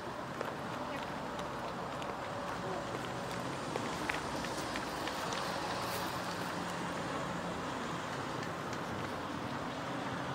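Steady outdoor background noise with faint, distant voices of children and a few light clicks.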